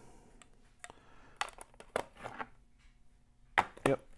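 A flake of burley pipe tobacco being broken up and rubbed out between the fingers: faint, scattered dry crackles and rustles, with a couple of sharper crackles near the end.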